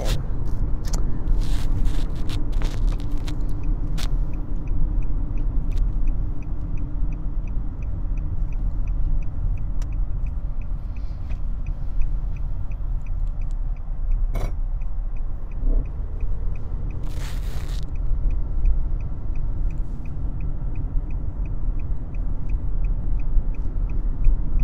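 Steady road and engine rumble inside a moving Nissan sedan's cabin, with the turn-signal indicator ticking at an even pace for a stretch early on and again near the end, as the car signals through a roundabout. A short knock sounds about halfway through.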